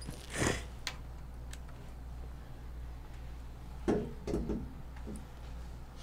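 Scattered faint clicks and knocks, with a few short rustles, over a steady low hum: studio gear and cables on a desk being handled.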